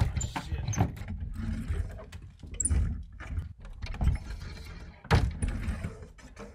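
Irregular knocks, scuffs and rustling of a person moving about a small room and settling in close to the microphone, with a loud knock about five seconds in.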